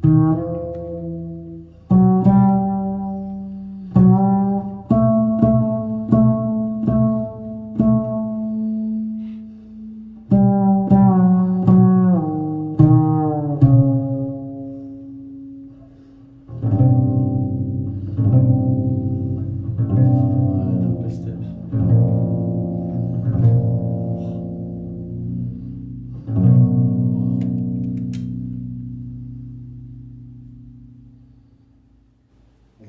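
Solo double bass: single notes and double-stops, each sharply attacked and left to ring and fade. A little over halfway through it moves into a denser, sustained passage of low notes that fades away near the end.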